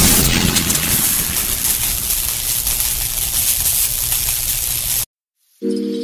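Intro sound effect: a loud hit followed by a long rushing noise that slowly fades and cuts off suddenly about five seconds in. After half a second of silence, soft sustained musical tones begin near the end.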